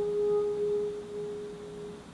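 Alto saxophone holding one long, soft note with an almost pure tone that slowly fades away, dying out near the end.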